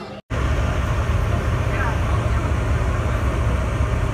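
Loud, steady low rumble of a moving vehicle heard from inside the cabin. It starts abruptly just after the beginning and runs on without change.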